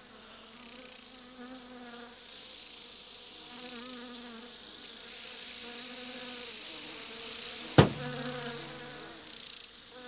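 Insect-like buzzing that wavers up and down in pitch, as of a fly, with one sharp smack about eight seconds in.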